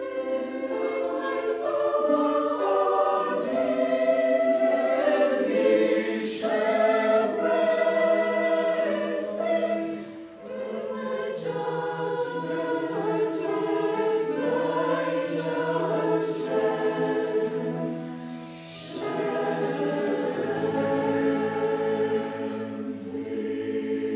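A polyphonic choir singing in sustained, interweaving chords. It pauses briefly about ten seconds in and again near nineteen seconds, then goes on.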